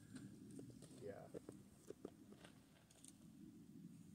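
Near silence: low outdoor room tone with a few faint taps and scuffs and a brief faint murmur of a voice.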